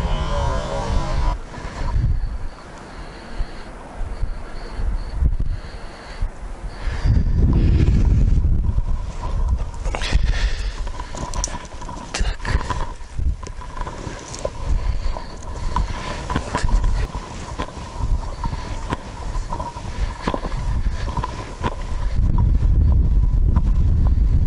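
Wind buffeting the microphone in gusts, with irregular crunching steps and knocks from moving through snow and dry grass.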